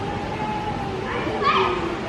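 Indoor play-centre din of children playing and distant voices, with one high voice calling out briefly about one and a half seconds in.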